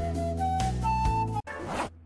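Background music playing a short melody of rising notes that cuts off abruptly about a second and a half in. A quick zipper being pulled down follows, lasting about half a second, as clothing is undone.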